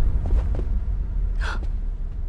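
A young woman's short, sharp gasp about one and a half seconds in, over a steady low rumble.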